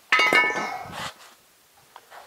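Steel suspension parts being handled in the truck cab: one sharp metallic clang that rings for about a second, then quiet apart from a faint click near the end.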